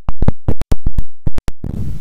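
The audio drops out to dead silence, broken by about a dozen sharp, loud clicks in the first second and a half, before the outdoor background comes back: a digital recording glitch.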